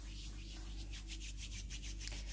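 Faint, quick rubbing strokes, about five a second: hands working a small piece of sugar paste.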